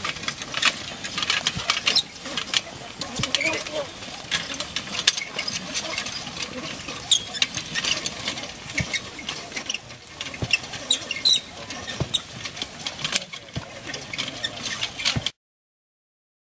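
Tillers K2 ox-drawn ripper toolbar dragged through dry crop stubble: a steady run of crackles, clicks and rattles, with people's footsteps and voices. The sound cuts off suddenly near the end.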